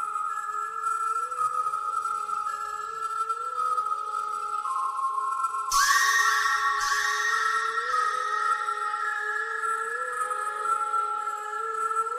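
Background music: an instrumental passage of sustained high tones over a short repeating melody, with a sudden crash about six seconds in.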